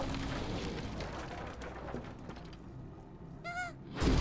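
Animated-trailer sound design: a low rumbling ambience that slowly fades, then, about three and a half seconds in, one short high creature-like cry.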